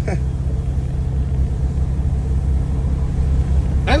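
Car engine and road noise droning steadily inside the cabin while driving at an even pace, a low rumble with a steady low hum and no revving.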